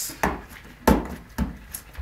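Three knocks of a kitchen utensil against a mixing bowl, the middle one the loudest, with light scraping between them.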